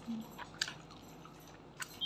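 Faint chewing of a mouthful of gupchup (pani puri), with a few soft crunches and clicks of the crisp puri shell spread through the two seconds.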